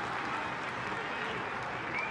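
Steady stadium crowd noise at a football match, an even wash of many voices with no single voice standing out.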